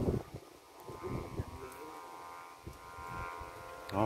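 Kite flutes humming steadily overhead as the kites fly: several held notes sound together in an unbroken drone. Wind rumbles unevenly on the microphone underneath.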